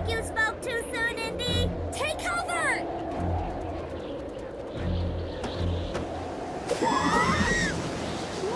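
Animated-cartoon soundtrack: background music under a low rumble. Short, wordless vocal cries come in a quick run over the first three seconds, and another rising and falling cry comes about seven seconds in.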